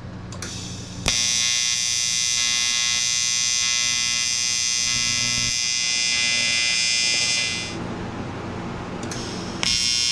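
TIG welding arc on aluminium, a steady electrical buzz. It strikes about a second in, runs for about six and a half seconds, stops, and strikes again near the end.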